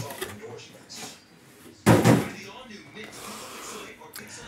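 Cardboard box handled on a table: one sharp thud a little under two seconds in, then softer rustling and scraping.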